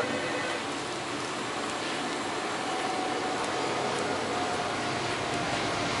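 Steady background hum and hiss of air-handling or ventilation noise in a workshop, with a faint steady tone. There are no distinct clicks from the wire nuts being twisted on.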